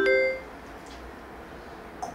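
A woman's unaccompanied singing breaks off in the first half second, trailing a few short held notes, followed by quiet room tone.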